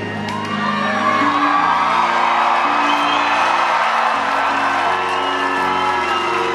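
A live band playing slow, sustained synthesizer chords that shift every second or two, with an arena crowd whooping and cheering over them.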